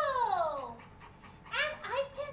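A woman's high-pitched, playful puppet voice making wordless sounds: one long falling vocal glide at the start, then a short rising-and-falling vocal sound near the end.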